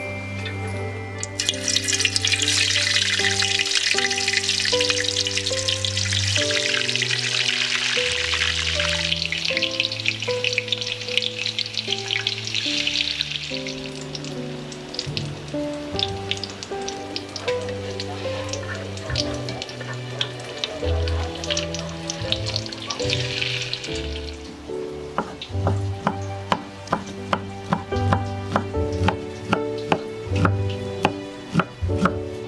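Tofu slices frying in hot oil in a wok: a sizzle that starts about a second in, is loudest for the first several seconds, fades, and swells again briefly later. Soft background music plays throughout, and near the end a knife chops steadily on a cutting board, about two cuts a second.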